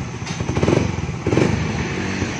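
Suzuki Raider R150 Fi's single-cylinder engine running in neutral and given two quick blips of the throttle, through an aftermarket Apido exhaust with its silencer still fitted; the engine has a tuned racing ECU and fuel-pump regulator, which give it a quick RPM response.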